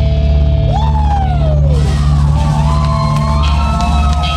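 Live rock band playing amplified electric guitar over a steady, loud bass: a guitar note swoops up and slides back down about a second in, then held guitar notes ring on.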